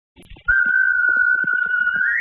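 A single whistled note, held steady at one pitch from about half a second in, just starting to slide upward at the very end.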